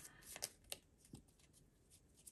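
Faint clicks and flicks of a tarot deck being shuffled by hand, a few quick ones in the first second, then near silence.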